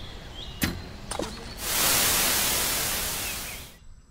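Two short clicks, then an aerosol can of nonstick cooking spray hissing in one continuous spray of about two seconds, easing off as it stops.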